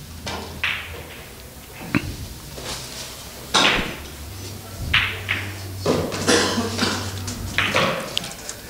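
Pool hall background sounds: scattered knocks and clicks, the loudest about three and a half seconds in, over a steady low hum.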